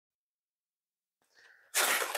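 Silence for most of the moment, then near the end a sudden burst of rustling handling noise, from hands on the foam airplane wing and its polystyrene packaging.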